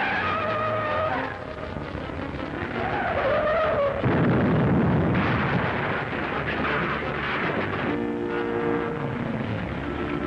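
Film sound effects of a speeding car with squealing tyres. About four seconds in comes a sudden loud, noisy rumble as the car crashes and goes up in flames. Music comes in near the end.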